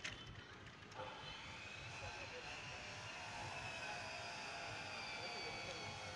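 Faint distant engine drone that comes in about a second in and holds steady, with a thin high whine that slowly falls in pitch.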